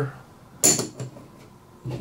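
Plastic poker chips clicking together as a one-chip bet is put down: one sharp clack with a short ringing tail about half a second in, then a lighter click about a second in.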